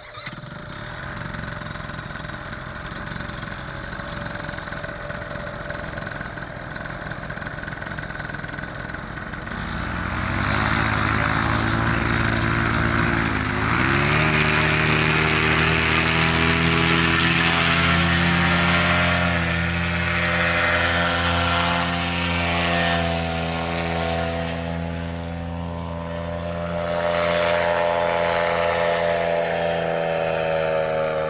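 Paramotor engine and propeller: it starts up and runs at a low, steady speed for about ten seconds, then is throttled up to high power for the takeoff run, its pitch dipping briefly and climbing again, and stays at high power as the pilot climbs away.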